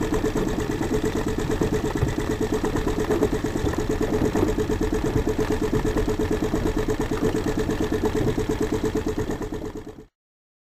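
Small outboard motor idling with a steady, fast, even putter, fading out near the end.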